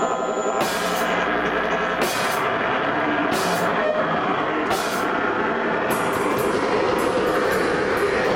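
A loud live rock duo playing electric guitar and drum kit in a dense, continuous wall of sound. Cymbal crashes fall about every second and a half, then come quicker from about six seconds in.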